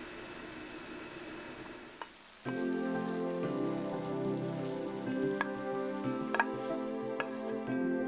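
Shiitake and wakegi frying faintly in butter and soy sauce in a frying pan. About two and a half seconds in, soft background music starts, with a few light clicks of a spatula against the pan and bowl as the food is served.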